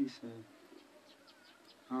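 Faint outdoor background with a few brief high chirps, between stretches of a man's voice.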